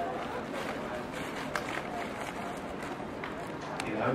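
Classroom recording during a lull: a steady background hiss with faint, indistinct voices and a few light clicks.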